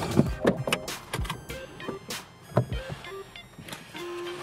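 Background music with a scattering of sharp knocks and clicks from someone moving about and handling the camera inside a car's cabin.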